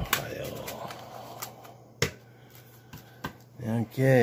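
A stack of Canadian polymer $20 banknotes being riffled and handled on a cloth-covered table: a rustling for the first second or so, then a few sharp snaps and taps of the notes, the loudest about two seconds in. A man's voice sounds briefly near the end.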